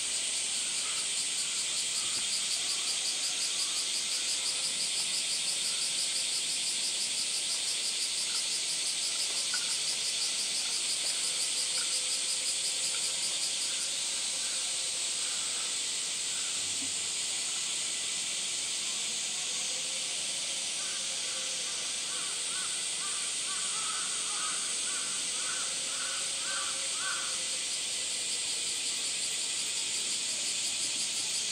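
Steady, high, pulsing drone of a summer cicada chorus. A run of about ten short, evenly spaced calls comes in the last third.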